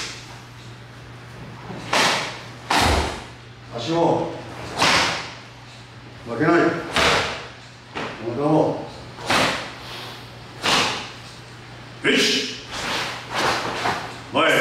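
Sharp open-hand slaps and strikes land on karate students' arms, chests and shoulders about every one to two seconds as the teacher tests their Sanchin stance. One heavier thump comes about three seconds in, and short voiced sounds fall between some of the hits.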